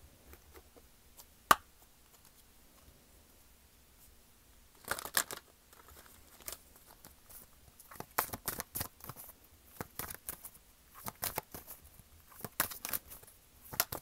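Tarot cards being shuffled and handled. There is a single sharp tap about a second and a half in, then from about five seconds on a run of quick papery snaps and rustles.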